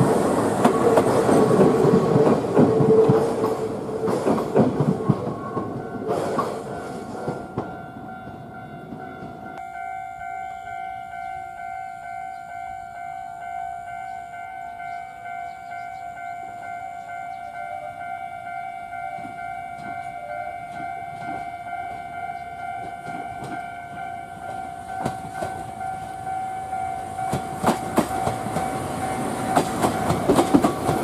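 A Yoro Railway electric train runs along the rails with clattering wheel noise, fading away over the first several seconds. Then a railway level-crossing alarm rings steadily in repeated tones. Near the end the clatter of an approaching train's wheels builds up and grows loud as it passes close by.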